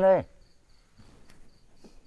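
A cricket chirping steadily: short, high, evenly spaced chirps, about four a second. At the start a man's voice holds a word and then stops.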